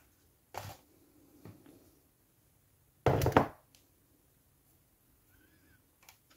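Handling noises on a hobby workbench: a light knock about half a second in, then a louder, brief thunk about three seconds in.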